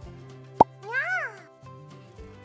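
Light background music with a cartoon sound effect laid over it: a sharp pop about half a second in, then a short tone that rises and falls in pitch.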